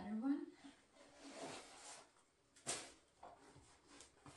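Handling of tan leather heeled boots: a soft rustle, then one sharp knock about two and a half seconds in, after a brief hum-like vocal sound from a woman at the start.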